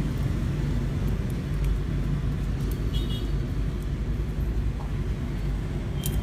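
Steady low rumble of background road traffic, with a brief faint high beep about three seconds in.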